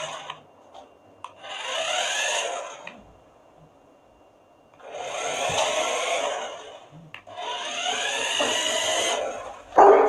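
A small remote-control toy car's electric motor whirring in three bursts of about two seconds each as it drives over a wooden floor, the pitch rising as each burst starts. A loud sudden sound comes at the very end.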